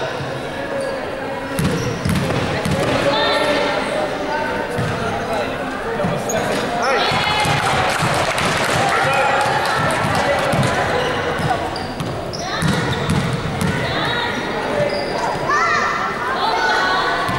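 A basketball bouncing on a hardwood gym floor, with repeated short thuds, amid the chatter of players and spectators in a sports hall.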